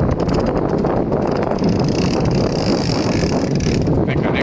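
Fishing reel being cranked: rapid ratchet clicking for the first second or so, then a thinner steady whir, over a steady low rumble.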